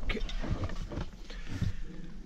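Light handling noises: scattered soft knocks and rustles over a low steady hum.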